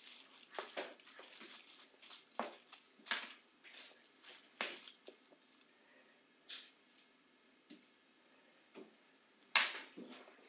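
Foil wrapper of a chocolate egg being crumpled and peeled by hand: irregular short crinkles and crackles, with a quieter lull and one louder crackle near the end.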